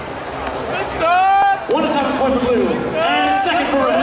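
A man's voice calling out in drawn-out, shouted phrases over a public-address system, with crowd noise underneath.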